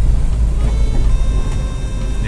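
Steady engine and road rumble heard from inside the cabin of a moving vehicle, with faint music underneath.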